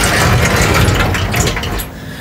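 Sliding glass door of a display cabinet being pushed open along its track: a dense, rough rattling of rollers that lasts nearly two seconds and stops just before the end.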